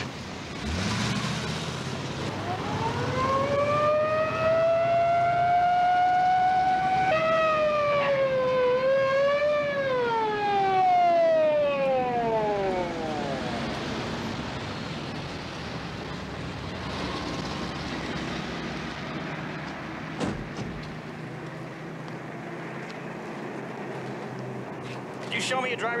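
Police car siren winding up and holding a steady tone, then breaking into a quick warble about seven seconds in before winding down and dying away about halfway through. A car engine runs underneath, leaving a low traffic hum once the siren stops.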